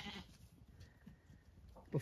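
Zwartbles sheep bleating faintly, with a short bleat at the very start and only faint sounds after it.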